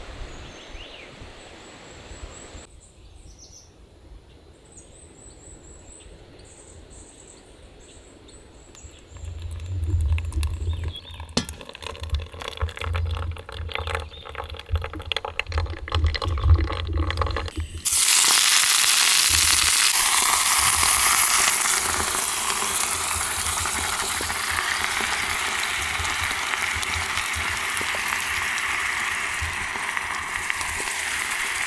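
Quiet outdoor morning air with faint high chirps, then low rumbles and clicks. About two-thirds of the way in, a loud, steady hiss starts suddenly: food cooking in a pot on a small portable gas stove.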